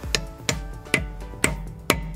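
Steel hammer striking a 12-point socket five times, about two blows a second, driving the undersized socket onto a wheel lock nut so it bites tight enough to turn the lock off without its key.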